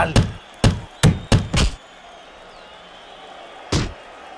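Boxing gloves landing hard punches in close-range body work: a quick flurry of about six heavy thuds in under two seconds, then a pause and one more hit near the end.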